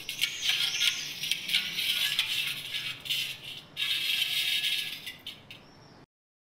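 Mirror glass clattering and tinkling in two bouts of dense, sharp clicks. The first bout stops a little past halfway; the second starts right after and dies away about a second before the end.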